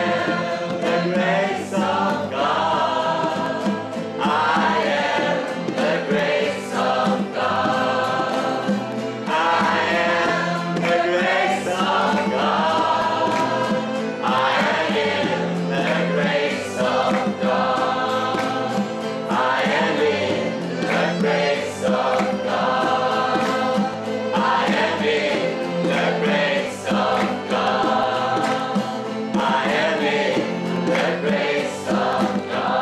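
A group of men and women singing a devotional song together in long held phrases, accompanied by acoustic guitar.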